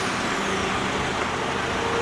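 Land Rover Defender 110's turbo-diesel engine idling steadily, with a faint steady tone joining in partway through.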